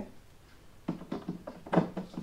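Hand screwdriver driving a screw into the table frame: a quick run of light clicks and taps beginning about a second in.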